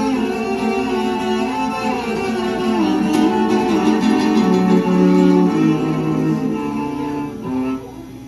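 Cello and Russian seven-string guitar playing an instrumental passage together: long held cello notes sliding from pitch to pitch over plucked guitar. The music drops away just before the end.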